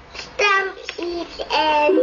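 A small child singing a few short, held notes, heard through a computer's speaker on a video call.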